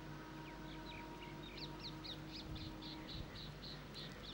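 A bird calling faintly in a run of short, high repeated notes, about four a second, starting about a second and a half in, over a low steady hum.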